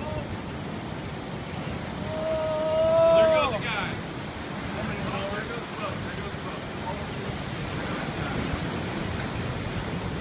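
Ocean surf breaking and washing over the rocks of a jetty, with wind buffeting the microphone. About two seconds in, a person lets out a long, drawn-out cry that swells to the loudest moment and breaks off a second and a half later; faint voices follow.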